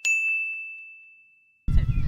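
A single bright, bell-like ding sound effect that rings on one high note and fades away over about a second and a half. Near the end a low outdoor background rumble cuts in.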